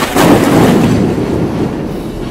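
A sudden loud boom, a thunder-like crash, that dies away in a rumble over about a second and a half.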